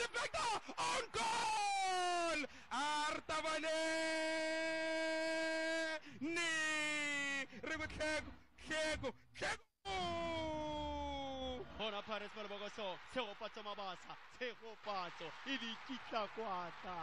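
A football commentator's drawn-out goal call: a man's voice holding long shouted notes, several of them sliding down in pitch at the end, followed about twelve seconds in by fast, excited commentary.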